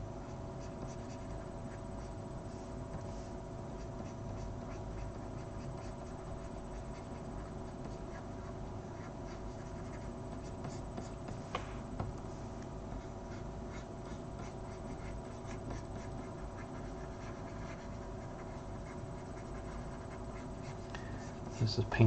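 Steady low electrical hum of a computer setup, with faint scratching and a few light clicks from a stylus working on a graphics tablet.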